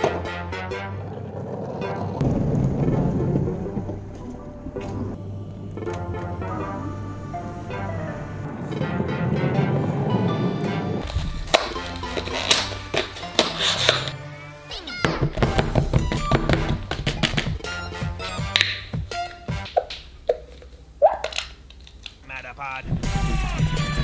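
Background music, with many sharp knocks and clicks through the second half.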